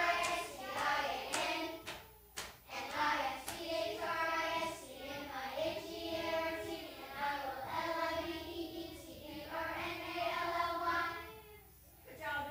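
A group of young children singing together in short phrases; the song ends about a second before the close.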